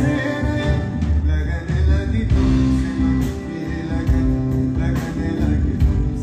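A live band playing on stage: electric guitar, acoustic guitar, keyboards and percussion over a full, steady bass.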